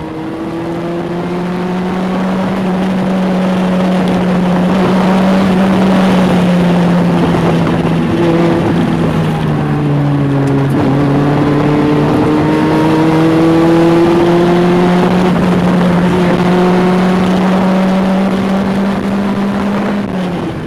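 1985 Toyota Corolla GT-S AE86's 16-valve 4A-GE four-cylinder heard from inside the cabin, held at high revs under load. Its pitch sags a little around the middle, then climbs steadily again toward the end.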